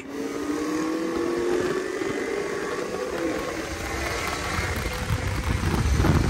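V8-powered cars accelerating hard at full throttle in a roll race. An engine note climbs steadily for the first couple of seconds, and low rumble and wind noise build toward the end.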